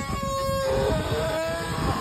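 The wooden axle of a loaded ox cart singing as the cart rolls: a sustained squealing whine that drops in pitch about two-thirds of a second in and rises higher again after about a second, over the low rumble of the solid wooden wheels.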